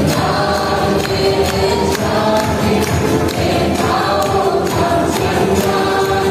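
Live worship music: many voices singing together in long held notes over a band with a steady drum beat.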